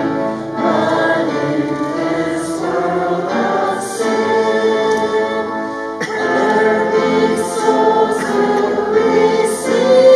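Congregation singing a hymn together in church, holding notes that change every second or so.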